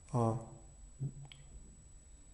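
A man's short voiced hesitation sound, then a faint click about a second later, over quiet room tone.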